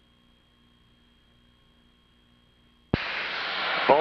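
Near silence on the cockpit radio feed with a faint steady hum, then about three seconds in a sudden burst of loud radio hiss as a transmission is keyed, with a man's voice beginning right at the end.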